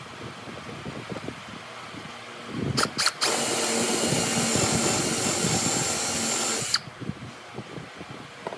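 Cordless drill boring into a softwood beam: two short trigger blips about three seconds in, then a steady run of about three and a half seconds that cuts off suddenly.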